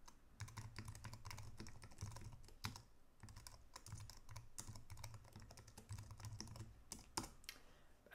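Typing on a computer keyboard: quick, faint runs of key clicks in uneven bursts with brief pauses between them.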